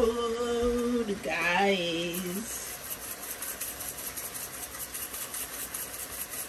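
A woman humming: one held note, then a short gliding one, in the first two and a half seconds. After that, a quieter steady sizzle with fine crackling from the pot of meat, onions, tomatoes and green pepper frying on the stove.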